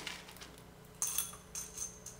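Small pieces of leca (expanded clay pebbles) rattling and clinking into a small glazed ceramic pot, in a short clatter that starts about a second in and ends with a few lighter clicks.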